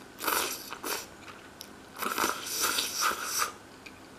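A person eating cold green-tea soba (cha soba) noodles close to the microphone: wet mouth sounds of taking in and chewing noodles, in a short spell in the first second and a longer spell of about a second and a half past the middle.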